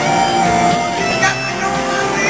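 Live rock band playing: electric guitar over drums and bass, with held notes.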